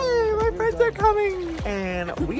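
A person's long, drawn-out, high excited vocal call, like a stretched "yaaay", that slowly falls in pitch and ends about a second and a half in, with a few light clicks.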